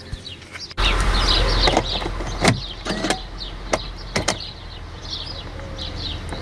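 A low rumble sets in suddenly about a second in and eases off, with several sharp knocks and clunks of handling inside a van's cab. Short high chirps run through it.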